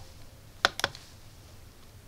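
Two sharp clicks, about a fifth of a second apart, from the rotary encoder knob of a ZK-4KX buck-boost converter as it is turned to step up the set current.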